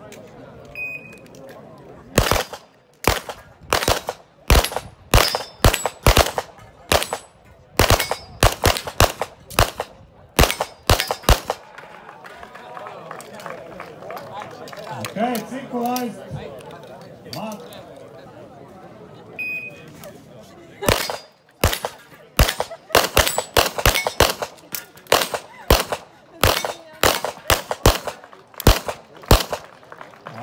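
A short shot-timer beep, then two competitors firing rapid overlapping strings of handgun shots at steel plates, about twenty shots over some nine seconds. A second beep about 19 s in starts a second volley of the same kind near the end.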